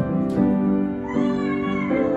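Grand piano playing sustained chords, joined about a second in by a high voice holding a wavering note that ends just before the close.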